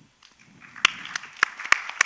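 Audience applause that starts about half a second in and builds, with a few sharp individual claps standing out above the rest.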